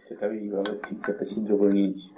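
A few light metallic clinks as a thin metal rod knocks against a small metal can, the body of a homemade alcohol stove, with a man's voice over them.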